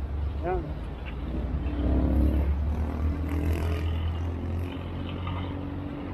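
A motor vehicle passing on the nearby road: a deep rumble that swells about two seconds in and then slowly fades. A brief voice is heard about half a second in.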